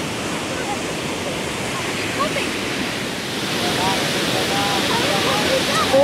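High-pressure water jet blasting from a dam's outlet pipe: a steady rushing of water and spray, growing a little louder in the second half.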